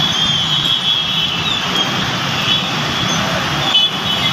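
Road traffic noise on a waterlogged street: vehicle engines running in a steady wash of street noise, with a short break near the end.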